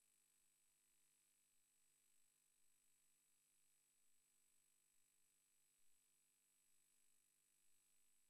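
Near silence: only a faint, steady hiss with a thin high tone, the recording's own noise floor.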